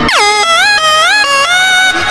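Air-horn style sample in a Brazilian funk DJ intro: a quick falling swoop, then four horn-like notes that each bend upward, the last held until near the end. The bass drops out underneath it.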